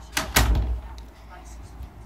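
Two quick knocks close together with a low thud, a fraction of a second in, then quiet room tone.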